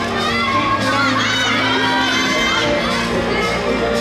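Crowd of girls cheering and shouting in high voices, with floor-exercise music playing underneath.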